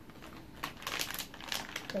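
Foil blind-bag pouch being crinkled in the hands: an irregular run of sharp crackles, extremely crinkly, getting denser and louder about halfway through.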